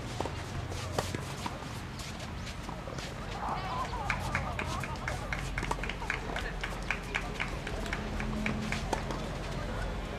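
Open-air ambience of faint distant voices over a low steady hum, joined from about four seconds in by a rapid, even run of light high ticks, about four or five a second, that stops near the end.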